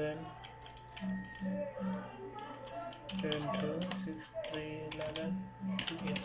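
Computer keyboard keystrokes as a phone number is typed in, a few scattered clicks. Party music and voices run underneath.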